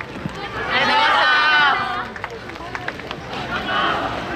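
A group of dancers shouting together in unison for about a second, then the scattered patter of feet as they run off.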